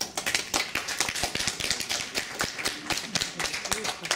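Audience applause that starts suddenly, many people clapping at once, right as a solo piano performance ends.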